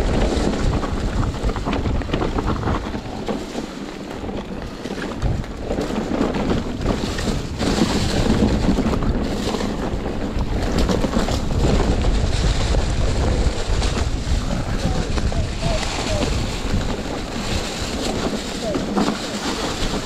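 Wind buffeting the microphone over the noise of an Orbea Wild FS e-mountain bike descending a trail, its tyres rolling over dry fallen leaves and the bike rattling over the rough ground.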